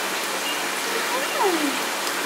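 Steady rush of running water in a shallow pool, with faint voices in the background around the middle.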